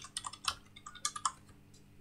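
Computer keyboard being typed on: a quick run of about ten light keystrokes that stops after about a second and a half.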